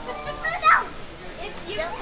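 Excited voices of a young girl and adults, with one short, loud, high-pitched squeal a little under a second in.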